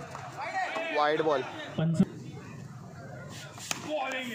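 Men's voices calling out, then a single sharp crack near the end as a wooden bat strikes a tennis ball.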